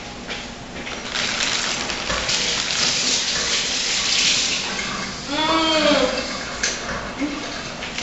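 Kitchen tap running into the sink with a steady hiss for about four seconds, easing off about five seconds in. A short vocal sound with a sliding pitch follows just after it.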